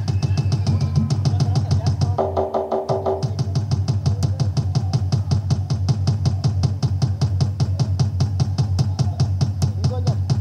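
Telangana Bonalu folk dance music driven by a fast, steady drum beat, with a brief held pitched note about two seconds in.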